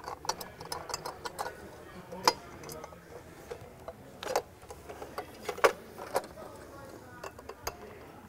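Small metal clicks and ticks at irregular intervals, a few of them sharper, as the small screws holding a panic exit device's metal head cover are worked out with a hand screwdriver and the parts are handled.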